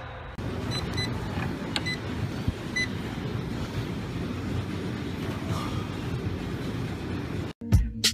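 Treadmill running with a steady low whir of belt and motor, with a few short electronic beeps from its console in the first three seconds. It cuts off near the end.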